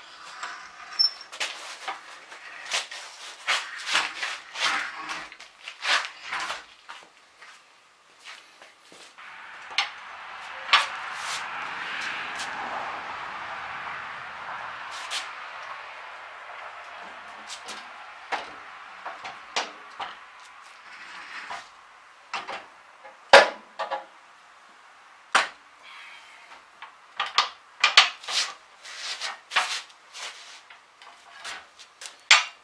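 Irregular metal clanks and knocks from the cutter bar and mounting linkage of a 22 sickle mower being handled and fitted to the tractor. A steady hiss rises and falls for about ten seconds in the middle.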